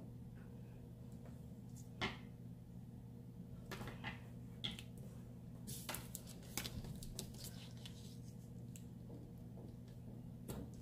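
Scattered small clicks, ticks and rustles of hands working washi tape onto a paper planner page on a wooden desk, the sharpest about two seconds in and a cluster in the middle, over a faint steady low hum.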